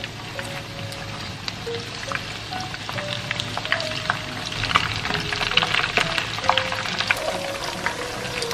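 Battered pork belly pieces frying in hot oil in a wok: a steady sizzle with sharp crackles, getting busier a few seconds in as more pieces go into the oil. Background music plays under it.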